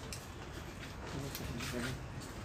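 Faint speech in the background over low room noise, with a few light clicks.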